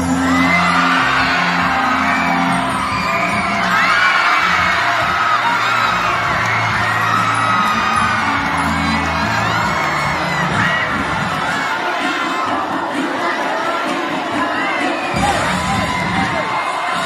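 A crowd of spectators cheering, screaming and whooping over loud dance music with a heavy bass line.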